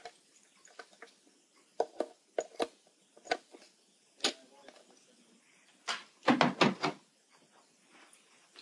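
Scattered plastic clicks and knocks as a hand-held red plastic data acquisition box with cable connectors plugged in is handled, then a louder run of knocks about six seconds in as the box is set down on the tabletop.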